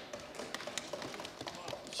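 Members thumping their desks in approval, a quick irregular patter of knocks that goes on through the pause in the speech.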